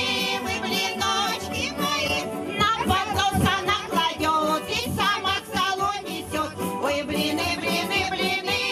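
Women's folk ensemble singing together into microphones over instrumental accompaniment, amplified through a PA.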